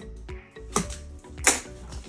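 Two sharp snaps from the cardboard product box as it is handled and opened, the second, about a second and a half in, the loudest, over steady background music.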